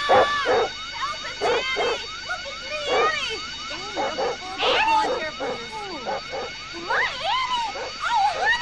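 A dog yelping and whining in a run of short calls that rise and fall in pitch, over a few steady high tones.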